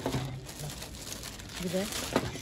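Plastic rustling and crinkling as a hand reaches among packaged goods on a shop shelf to take out another plastic water bottle.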